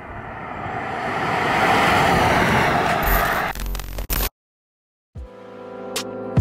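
A Hyundai Kona Electric driving past: tyre and wind noise swelling to a peak about two seconds in and fading away, with no engine note. A low thump follows, then a moment of silence, and music starts near the end.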